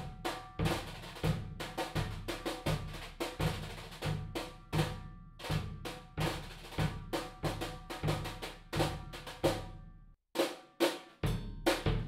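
Drum kit played with wire brushes: a marching-style pattern of steady brush strokes on the snare, with bass drum underneath. It stops about ten seconds in, and after a short pause a new, busier groove starts.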